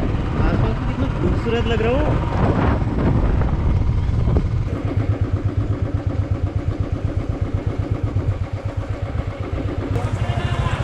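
Royal Enfield motorcycle being ridden, its engine and wind rumbling under a voice in the first few seconds. From about five seconds in, the engine beats evenly and slowly, about eight pulses a second.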